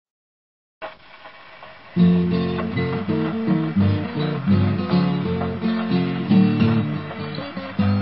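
Acoustic guitar playing a ragtime blues intro, with an alternating bass line under melody notes. It starts about two seconds in, after a short faint hiss.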